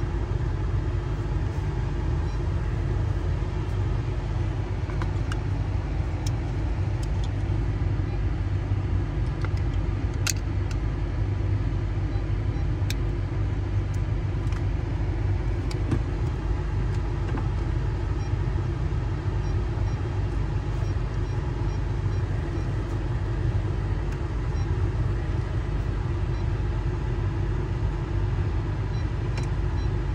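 Car engine idling, a steady low rumble heard from inside the cabin, with a few faint clicks.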